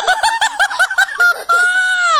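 Young girl laughing: a quick run of high-pitched giggles, then one long high held note that drops in pitch at the end.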